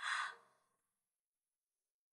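A person's short, breathy exhale like a sigh, lasting well under a second.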